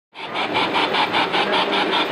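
Large-scale model steam locomotive running with a rapid, even chuffing of about six beats a second.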